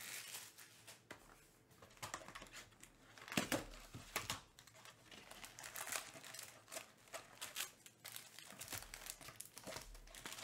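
A cardboard trading-card hobby box being opened and its foil-wrapped packs crinkling as hands lift them out, in scattered short rustles. A single sharp knock stands out about three and a half seconds in.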